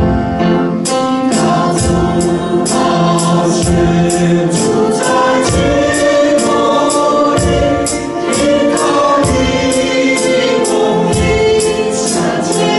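Chinese-language worship song sung with band accompaniment: voices carrying the melody over a steady drum beat.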